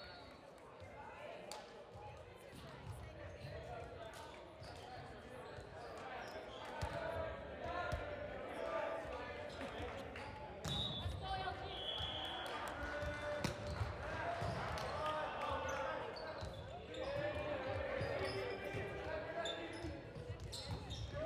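A volleyball bounced a few times on a hardwood gym floor, each bounce a sharp knock that echoes in the large gym, under indistinct voices of players and spectators.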